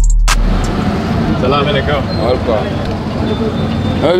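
A drum-machine music beat cuts off just after the start, giving way to busy street noise: a steady din of traffic with several people's voices talking over it.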